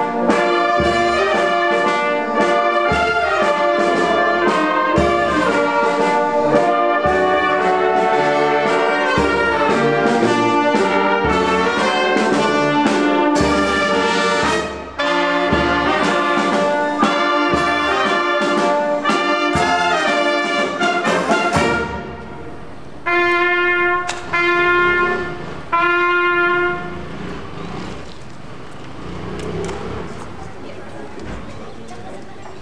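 Brass band playing in the street, trumpets, trombones, tuba and saxophones over a steady bass drum beat about once a second; the music breaks off about 22 s in. Three held brass notes of the same pitch follow, each about a second long, then a low background murmur.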